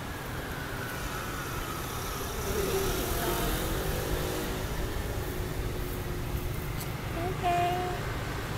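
Street traffic: a steady low rumble, with a vehicle passing that grows louder around the middle while a faint whine falls slowly in pitch.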